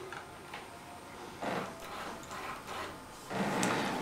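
Faint rubbing, scraping and light knocks as a model locomotive is handled, lifted off its track and set back on, a little louder near the end.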